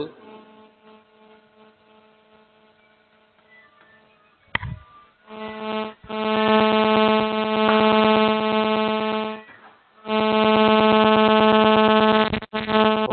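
A loud, steady electrical buzz on one pitch starts about five seconds in, just after a click. It cuts out briefly near ten seconds, then resumes. Before it there is only a faint low hum.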